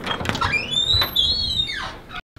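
An office door being opened by its round knob: a few latch clicks, then a long squeak that rises in pitch, holds, and falls away as the door swings open.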